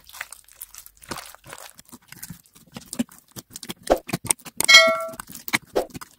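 Slime squeezed and stretched by hand, giving a quick, irregular run of sticky pops and clicks. About five seconds in there is a short ringing ding, the loudest sound.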